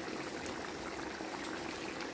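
Steady, even watery hiss of liquid in a kitchen.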